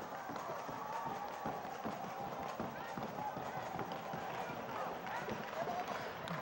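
A crowd dancing without music: many feet stomping and shuffling on the floor in quick, uneven knocks, with faint voices and shouts behind.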